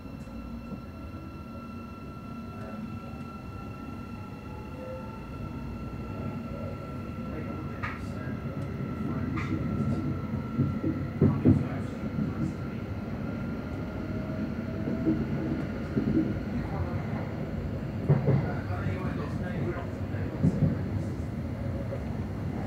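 Interior of a Thameslink Class 700 electric multiple unit running, heard from the passenger saloon: a steady rumble that grows gradually louder, with a faint rising whine. Several knocks and clunks from the running gear come in the second half.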